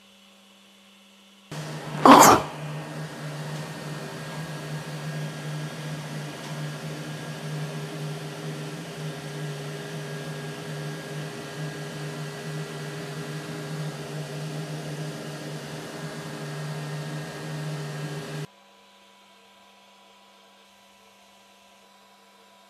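Elegoo Centauri Carbon 3D printer running its automatic self-check, a steady mechanical hum of motors and fans that starts about a second and a half in and cuts off suddenly near the end. A short, loud burst of noise comes about two seconds in.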